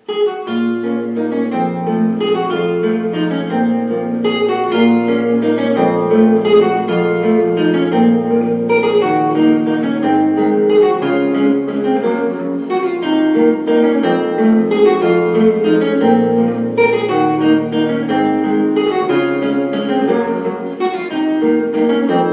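Nylon-string classical guitar played fingerstyle with a capo: a waltz in which a running melody of plucked notes rings over held bass notes.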